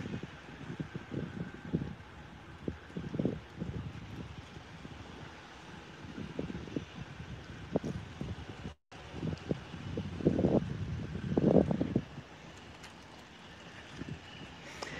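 Wind buffeting a phone's microphone in irregular low gusts, over faint distant street traffic, with a brief dropout in the sound about two-thirds of the way through.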